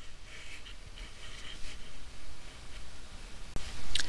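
Quiet workshop room tone with faint hand-handling noise, then a single sharp click about three and a half seconds in as a steel T-handle hex key is set down on the bench, followed by brief handling of the dividing head's indexing plate.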